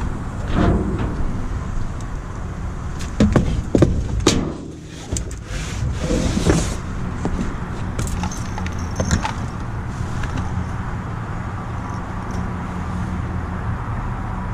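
Rummaging in a cardboard box of bottles and packages: cardboard scraping and rustling, with several sharp knocks and clunks as items are moved. A steady low hum runs underneath.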